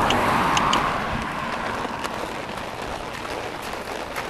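A car passing on the highway: tyre and road noise swells in the first second and then slowly fades. A few light clicks sound near the start.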